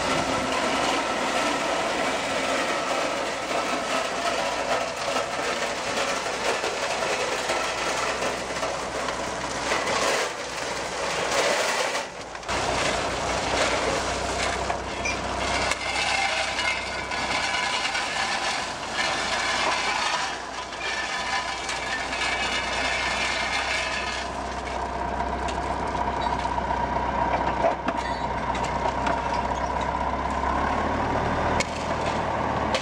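Crushed-stone ballast pouring and rattling out of small narrow-gauge hopper wagons onto the track, with shovels scraping and clinking in the gravel. About twelve seconds in, the sound breaks off briefly and a steady low hum joins the gravel noise.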